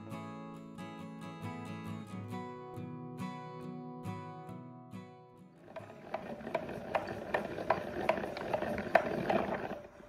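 Acoustic guitar music for the first half. About halfway through it gives way to a hand-cranked plastic yarn ball winder running: a rough whirr with a regular click about two to three times a second, stopping just before the end.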